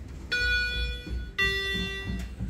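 Elevator arrival chime: two electronic notes, a higher one then a lower one about a second later, each ringing on for about a second over a low steady rumble.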